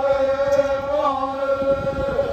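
A group of Kayapó men chanting in unison, holding one long, steady note with a slight waver in pitch.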